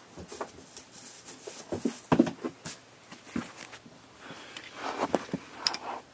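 Hands handling and opening a diecast car's packaging: irregular rustles, clicks and small knocks, with the sharpest knock about two seconds in and another cluster of rustling around five seconds in.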